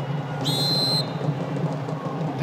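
Field hockey umpire's whistle: one short blast about half a second in, over steady background noise. The whistle awards a penalty corner for a stick foul.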